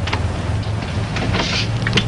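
Steady low hum and hiss of an early-1930s optical film soundtrack, with a few faint clicks and a brief higher hiss about one and a half seconds in.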